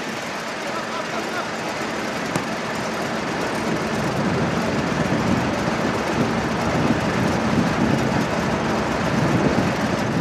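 Steady outdoor background rumble that grows louder about four seconds in, with faint distant voices.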